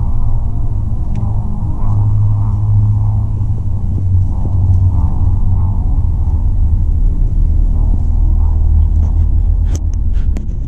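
Low, steady rumble inside a car cabin, with a few sharp clicks of handling noise near the end.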